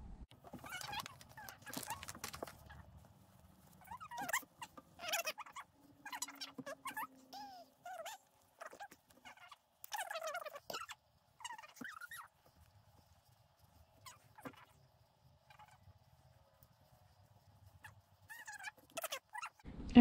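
Fast-forwarded recording of people talking and handling fabric: short, squeaky, chipmunk-pitched voice snippets and soft rustles in brief spurts. It goes nearly quiet for several seconds past the middle, then the snippets return just before the end.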